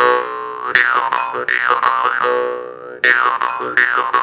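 Jaw harp (morsing) being played: sharp twangs over a buzzing drone, its overtones sweeping up and down as the mouth shapes the sound. The sound dies away a little before three seconds in, then a fresh run of plucks starts.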